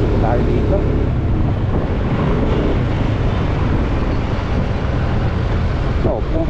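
Motorcycle engine running under way through city traffic, with steady wind rush over the helmet or handlebar microphone.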